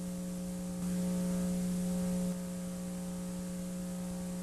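Steady electrical mains hum with a stack of buzzy overtones over faint hiss in an old broadcast recording, briefly louder for about a second and a half shortly after the start.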